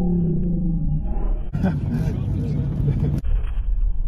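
Steady low rumble inside a car's cabin, with voices over it: a drawn-out voice at the start and a louder laugh from about a second and a half in that stops abruptly.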